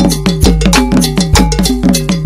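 Segment jingle: fast percussive music with rapid sharp strikes and a quick repeating falling figure over a deep bass.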